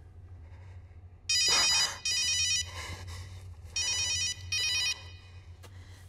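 A phone ringing with an electronic ringtone: two double rings, the first starting about a second in and the second about two and a half seconds later, over a steady low hum.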